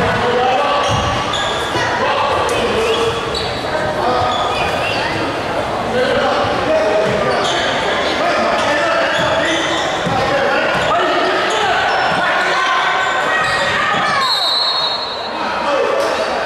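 Basketball dribbling on a hardwood gym floor during a game, under the shouting and chatter of players, coaches and spectators, echoing in a large gym.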